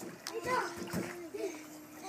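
Children's voices, with one long wavering call, over water splashing in a swimming pool as a child moves through the water.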